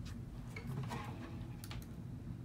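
Faint handling noise: a few soft clicks and knocks as an acoustic guitar is lifted and turned over, over a low steady hum.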